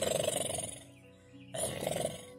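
A person's rough, growling grunt, twice: a longer one in the first second and a shorter one near the end, over steady background music.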